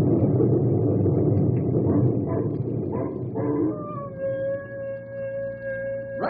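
Radio-drama sound effect: a dense rumbling noise fades out about three and a half seconds in, then a single long wolf-like howl drops briefly in pitch and holds steady.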